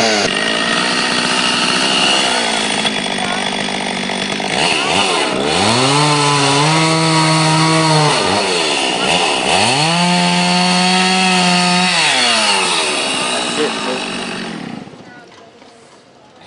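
Two-stroke chainsaw running and cutting into a wooden log, the engine rising twice to full throttle and holding there for about two seconds each time before dropping back. The saw falls away to a much quieter level near the end.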